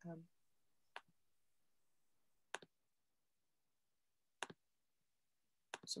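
Three single, sharp clicks, a second and a half to two seconds apart, against near silence: computer mouse clicks while a screen share is being set up.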